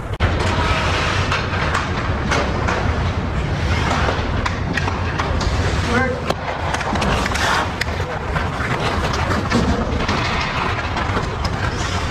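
Ice hockey game sounds in a rink: skates scraping the ice, sticks and puck clacking in frequent sharp clicks, and players calling out to each other.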